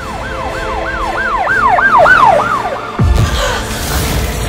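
Siren in a fast yelp, its pitch jumping up and falling about three times a second, stopping a little before three seconds in. A sudden low boom with a rushing noise follows about three seconds in.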